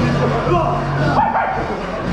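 Several young men's voices talking and calling out over one another in a small room, with music playing in the background.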